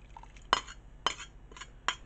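A metal ladle clinks against a ceramic bowl and a steel soup pot: three sharp clinks, the first about half a second in, as sour cream thinned with soup is scraped out of the bowl into the pot.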